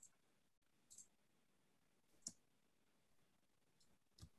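Near silence with a few faint, isolated clicks, the sharpest about two seconds in.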